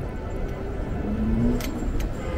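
City street traffic noise: a steady low rumble from cars on the avenue, with a faint tone rising slightly about halfway through and a single sharp click shortly after.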